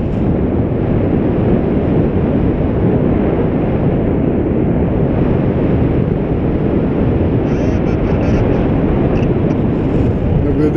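Wind rushing over the camera microphone during a paraglider flight: a steady, loud, low rumble of airflow with no engine note.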